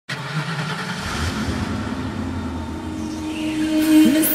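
Road traffic sound effect: car noise that grows louder toward the end, with a steady synth tone fading in near the end as a song intro.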